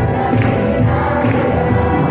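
Mixed adult church choir singing a Tagalog gospel song, voices held in sustained chords over a steady beat of about two a second.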